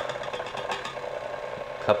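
Electric tilt-head stand mixer running at low speed with a wire whisk beating butter for buttercream: a steady motor whine with a fast, even rattle.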